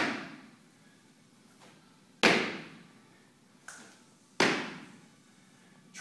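Squat jumps on a hardwood gym floor: heavy landing thuds about every two seconds, each dying away over about half a second, with a fainter knock shortly before each landing.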